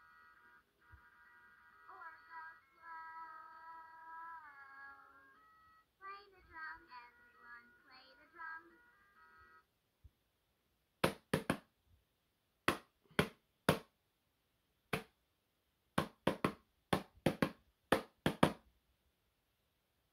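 LeapFrog Learning Drum toy playing an electronic tune with some sung or spoken sounds through its small speaker. About eleven seconds in comes a run of about sixteen sharp drum hits in an uneven rhythm as its drum top is struck.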